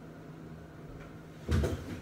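Quiet room tone, then a single short, dull bump about one and a half seconds in.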